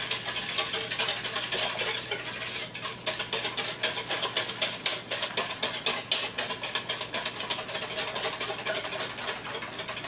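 Wire whisk beating milk and sugar in a mixing bowl: quick, rhythmic strokes against the bowl, stirring the sugar into the milk.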